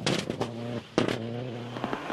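Rally car engine running at steady high revs, dropping out briefly just before the middle and coming back with a sharp crack about a second in.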